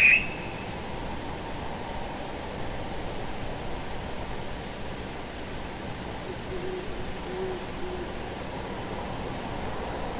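Owl hooting faintly, three short low hoots about two-thirds of the way through, over a steady hiss. A brief, sharp high-pitched sound right at the start is the loudest thing.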